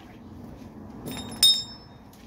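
A sharp metallic clink that rings briefly, about a second and a half in, with a fainter clink just before it: a metal part or tool knocked against metal.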